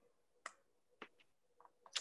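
Near silence with a few faint, short, sharp clicks: one about half a second in, another a second in, and a few smaller ticks near the end.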